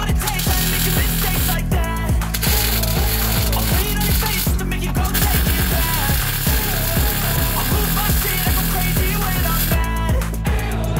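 MIG (wire-feed) welder arc sizzling and crackling in three runs with short breaks between, the last about five seconds long. Under it runs a rap music track with a steady bass beat.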